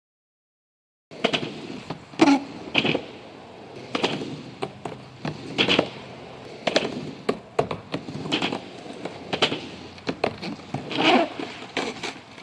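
Skateboard wheels rolling on asphalt, broken by repeated sharp clacks and slaps of the board hitting the ground. It starts suddenly about a second in.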